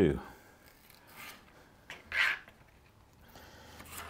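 Cutco kitchen knife slicing a yellow bell pepper into thin strips on a plastic cutting mat: a few short scraping cuts, the clearest about two seconds in.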